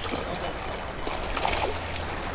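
Penn Battle III 4000 spinning reel being cranked against a heavy hooked sheepshead, its gears giving a fast fine ticking, over a steady rushing noise.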